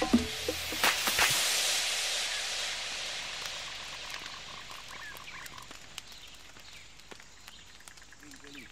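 Music ending, its last hit leaving a high cymbal-like wash that dies away over the first few seconds. Faint frog croaking follows, a run of short repeated calls in the middle.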